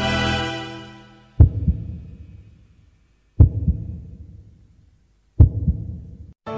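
Music fading out, then a heartbeat sound effect: three low double thuds about two seconds apart, each dying away.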